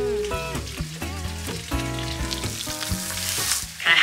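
Butterflied mackerel sizzling as it fries in a pan, under background music with held chords.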